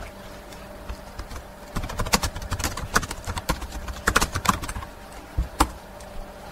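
Computer keyboard typing: an irregular run of key clicks starting about two seconds in and stopping shortly before the end, as a short line of text is typed.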